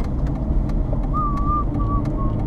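Road and engine noise inside a moving car's cabin: a steady low rumble. From about halfway a thin high tone comes and goes in short pieces, with a few faint clicks.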